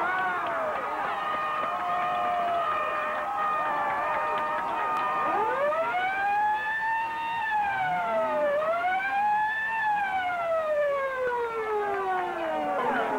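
A siren wailing in slow rising and falling sweeps, loudest from about six seconds in, over a background murmur of crowd voices.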